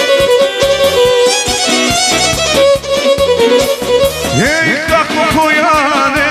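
Live Balkan kolo dance music: a fiddle-style melody over keyboard accompaniment and a steady beat. A man's singing voice comes in about four seconds in.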